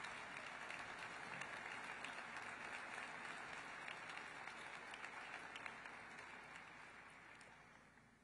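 Audience applause, a steady wash of many hands clapping with a few sharper single claps, dying away over the last two seconds.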